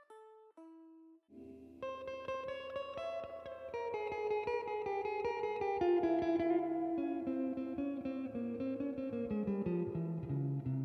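Kadence Astroman Strat-style electric guitar through a Fender Tone Master Deluxe Reverb amp, clean with reverb and the tremolo off. A couple of single plucked notes sound while a string is brought to pitch, then from about a second in it plays continuous clean melodic lines and chords that ring into each other.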